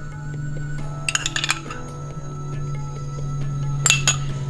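Soft background music with a steady low held note, over which a metal spoon clinks against glass a few times about a second in and once more near the end as ghee is spooned out of a small glass jar.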